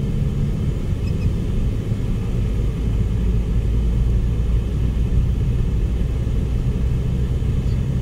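Steady low rumble inside a moving car's cabin: engine hum and road noise from the tyres at cruising speed.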